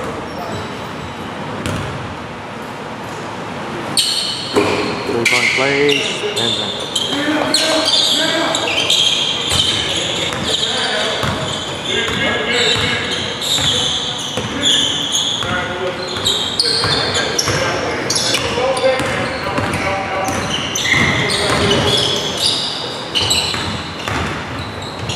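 Players and people in the gym calling out and talking over one another, with a basketball bouncing on the hardwood court; the voices grow busier about four seconds in.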